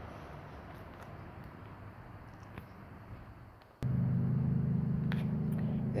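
Faint outdoor background noise. Then, about two-thirds of the way in, a steady low mechanical hum starts abruptly and runs on, much louder than before.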